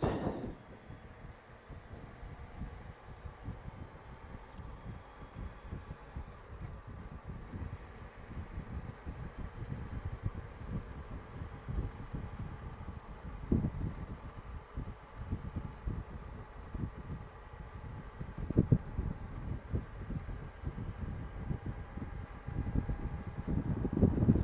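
Wind buffeting the bike-mounted camera's microphone as a Honda Goldwing flat-six cruises on an open road, an irregular low rumble with a couple of stronger gusts midway, over a faint steady hum of engine and road noise.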